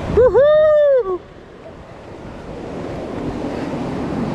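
A loud shouted call lasting about a second, rising and then held, then ocean surf washing on the shore with wind buffeting the microphone, slowly growing louder.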